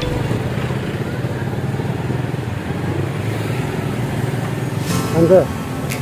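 Motorcycle engine idling and running at low speed in slow street traffic, a steady low hum. A voice starts about five seconds in.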